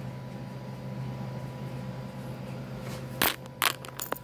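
Quiet steady hum of a room, then a few sharp knocks and clicks a little after three seconds in as the open glass pickle jar is handled and moved on the table.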